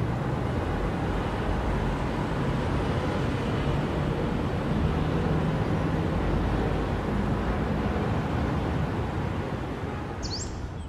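City traffic ambience: a steady rumble of road traffic, easing off slightly near the end.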